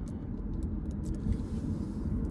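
Steady low rumble of a car heard from inside its cabin, with a few faint ticks.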